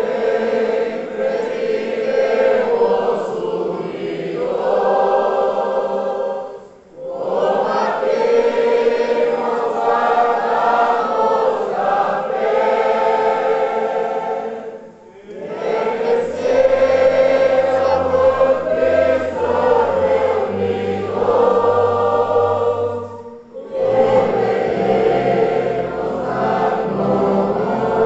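A large congregation singing a hymn together in long phrases, with a brief pause between each phrase about every eight seconds. A low bass accompaniment joins about halfway through.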